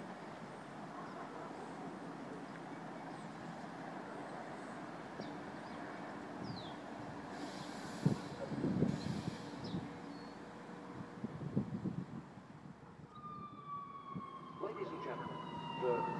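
Long Island Rail Road diesel push-pull train pulling into the station: an uneven low rumble of wheels on rail comes and goes as it nears, and near the end a whine slides slowly down in pitch as the train brakes.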